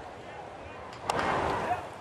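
Ballpark crowd noise, with a baseball bat meeting a pitched ball about a second in and the crowd noise swelling briefly after the hit, a weak chopper bounced to the right side.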